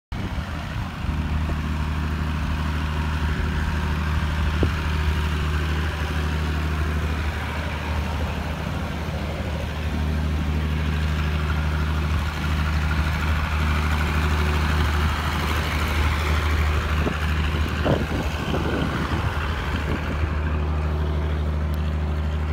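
Diesel generator engine running at a steady speed with a constant low hum, supplying power to an 11 kW submersible pump alongside solar panels.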